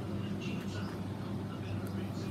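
Steady low hum of aquarium pumps and water circulating in the tank.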